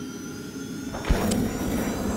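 Electronic logo-intro sound design: a steady synthetic drone of held tones, with one deep impact hit about a second in.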